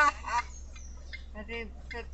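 Laughter in short pitched bursts, the last burst dying away in the first half second, followed by faint low sounds over a steady hum.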